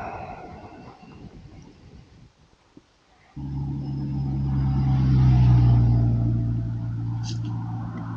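A road vehicle's engine hum passing by. It cuts in suddenly about three seconds in, swells to a peak a couple of seconds later, then slowly fades. Near the end comes a short hiss as a fizzy drink bottle is opened.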